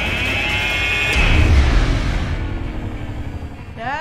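Electric hand blender motor running with a steady high whine. About a second in, a sudden hit with a deep rumble takes over and dies away slowly. A short shout comes near the end.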